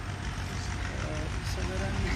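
A steady low rumble, with faint voices about a second in and again near the end.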